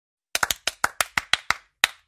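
A run of about ten sharp hand claps in a quick rhythm: three close together, then evenly about six a second, with a short pause before the last one.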